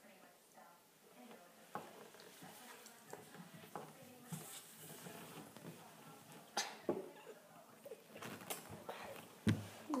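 Faint chewing and mouth sounds of a person eating a gummy candy, with scattered small clicks and rustles.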